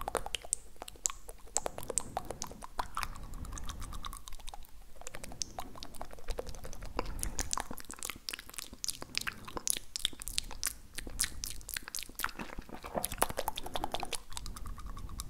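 Wet tongue clicks and mouth sounds made close against a foam-covered handheld recorder's microphone: a rapid, irregular run of sharp clicks and smacks that grows denser in the second half.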